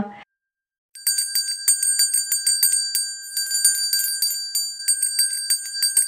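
A small bell rung rapidly and over and over, starting about a second in and ringing on for more than five seconds.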